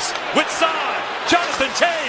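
An excited play-by-play commentator's voice calling a hockey rush over steady arena crowd noise.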